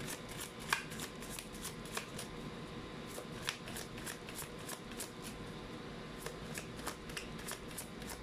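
Lo Scarabeo Egyptian Tarot cards being shuffled by hand: a soft, continuous run of quick light card clicks and flicks, several a second, with a few louder snaps among them.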